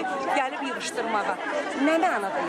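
Speech: a woman talking over the chatter of a crowd around her.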